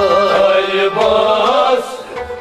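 Kashmiri Sufi song: men's voices singing a wavering melodic line over a steady harmonium drone and plucked rabab strings.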